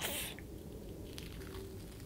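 Faint peeling of a dried, rubbery peel-off glitter face mask being pulled away from the skin, with a few light ticks.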